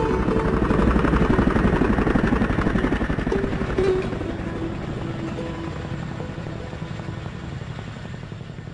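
Helicopter rotors beating in a fast, even chop, loud at first and fading steadily over the last few seconds, with background music underneath.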